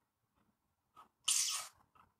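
A single short, sharp burst of breath from a man, about a second and a quarter in, sneeze-like, with a faint click just before it.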